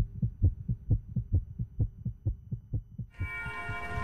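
Fast heartbeat sound effect: low thumps in lub-dub pairs, about two beats a second, over a faint steady hum. About three seconds in, a sustained music chord swells in over the beating.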